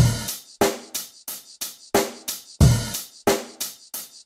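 Drum kit playing a beat on its own, the rest of the backing music dropped out: evenly spaced snare and hi-hat hits about three a second, with a heavier kick-drum hit near the start and again about two and a half seconds in.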